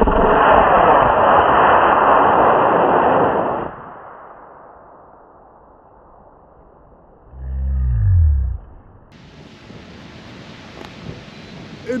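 Model rocket motor igniting at liftoff: a loud rushing hiss that lasts about three and a half seconds, then fades as the rocket climbs away. A little past halfway, there is a brief low rumble that falls in pitch.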